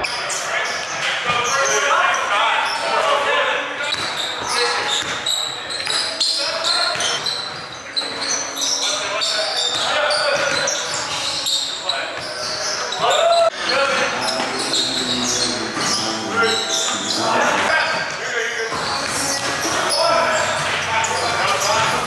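Basketball bouncing on a hard court floor during a pick-up game, with sneakers squeaking and indistinct player voices, echoing in a large gym hall.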